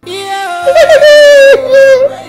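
A woman's loud, high voice held on a long wavering note, like a drawn-out excited cry, then a shorter second note near the end, over soft background music.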